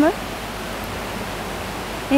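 Steady, even rush of flowing water, with no change in level.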